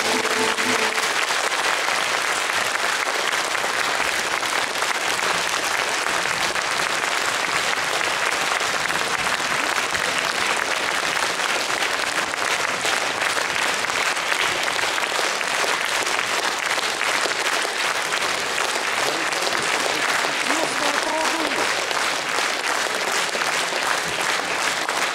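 Concert hall audience applauding steadily, with the last held note of the song dying away in the first second.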